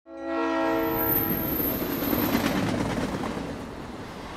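A train horn sounds a steady chord of several notes for about two seconds, then fades into the running noise of a moving train.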